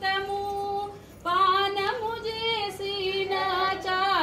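A woman singing a devotional song in long, held notes, with a short break about a second in before the line goes on.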